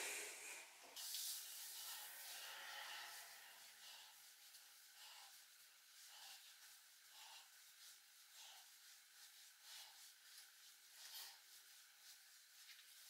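Hands scrunching mousse into wet hair, heard faintly: a soft hiss over the first couple of seconds, then brief rustles about once a second.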